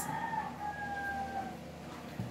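A rooster crowing: one long drawn-out note that sinks slightly in pitch and ends about a second and a half in.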